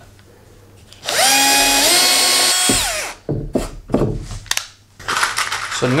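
Bosch cordless drill drilling a pilot hole into plywood: the motor whines for nearly two seconds, stepping up in pitch partway through, then winds down and stops. A few sharp knocks follow.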